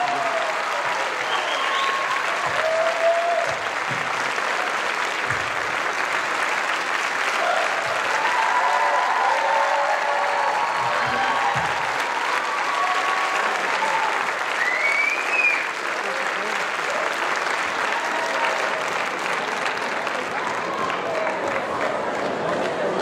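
Theatre audience applauding steadily, with scattered cheering voices over the clapping.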